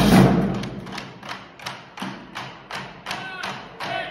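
A marching drumline's cadence ends on a final hit of drums and crash cymbals that rings out for about a second. Sharp clicks then follow at a steady pace of about three a second.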